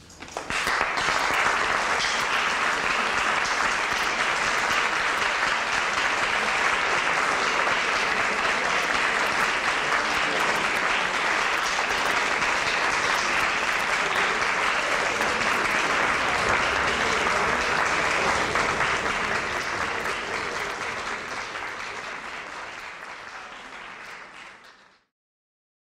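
Concert audience applauding steadily just after the final chord of a string orchestra piece, the clapping fading over the last few seconds.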